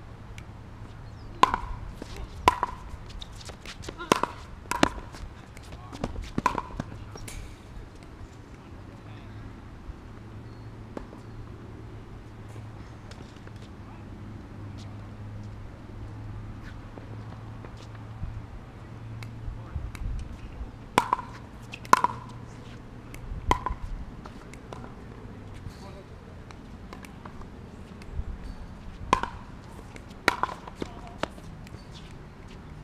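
A ball being hit back and forth and bouncing on a hard court in two rallies, each stroke a sharp pop: five in the first seven seconds, then another run starting about 21 s in. A low steady hum sits under the first half.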